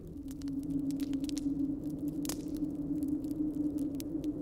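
Ambient background-music drone: a steady low hum with faint scattered crackles and one sharper click a little after two seconds in.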